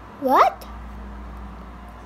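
One short, loud vocal squeak about a quarter second in, rising sharply in pitch and lasting about a quarter second.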